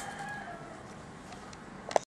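A faint, drawn-out animal call, one held note sliding slowly down in pitch over about a second. A short knock comes near the end.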